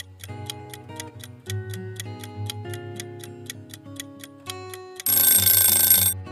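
Quiz countdown-timer clock ticking quickly and steadily over light background music, ending about five seconds in with a loud alarm ring, about a second long, that signals time is up.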